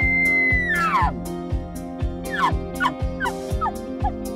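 Elk bugle blown on a bugle tube call: a long high whistle that breaks and slides steeply down about a second in, then a run of short, falling chuckle notes. Background music with a steady beat plays under it.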